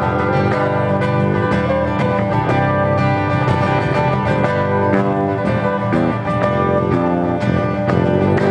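Two acoustic guitars playing live together, strummed and picked in a steady rhythm, an instrumental stretch with no singing.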